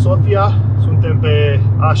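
Steady low drone of road and engine noise inside the cabin of a moving Mitsubishi Lancer 1.6 petrol car at highway speed, under a man talking.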